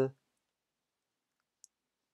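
The tail end of a spoken word, then near silence broken by a single faint, short click about one and a half seconds in.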